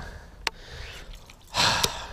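A man's loud, frustrated exhale, a sigh of breath about one and a half seconds in, after a musky has just come off his line. A sharp click comes before it, about half a second in.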